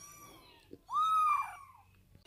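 Kitten mewing: one clear, high-pitched mew about a second in that rises and then falls, with fainter mews at the start.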